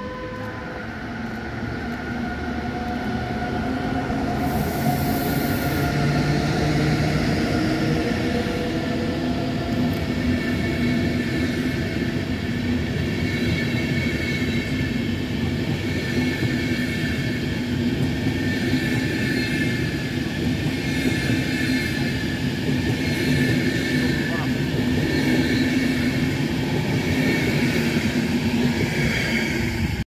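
DB Class 101 electric locomotive pulling away with an Intercity train. Its drive whines in several tones that rise in pitch over the first several seconds as it gathers speed, and the level builds. Then the coaches roll steadily past on the rails.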